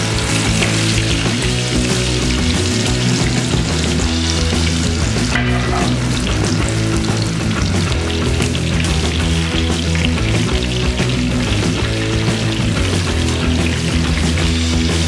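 Besan-coated rohu fish sizzling as it fries in hot oil in a pan, heard under loud background music.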